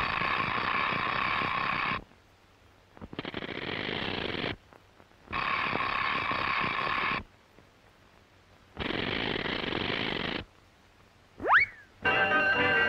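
Cartoon telephone ringing: four buzzy rings of about two seconds each with short gaps between. Near the end a quick, loud rising whistle.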